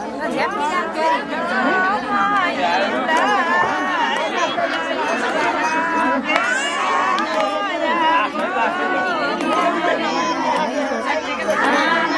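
A group of women talking over one another in lively crowd chatter, many voices at once, with no music playing.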